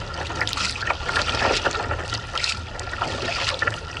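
Kayak paddle strokes: the blade dipping and splashing, with water trickling and lapping against the hull. A steady low rumble of wind on the microphone runs underneath.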